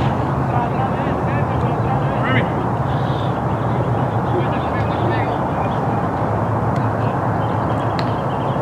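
Outdoor ballpark ambience: background crowd voices over a steady low hum, with scattered short high chirps.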